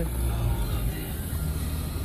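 Low, steady rumble of a car heard from inside the cabin.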